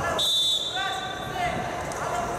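Referee's whistle, one short blast of about half a second, restarting the wrestling bout.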